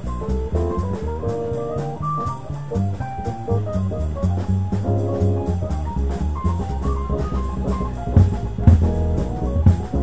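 Small jazz band playing live: a drum kit with cymbals, a plucked upright bass and melodic lines above them, with louder drum accents near the end.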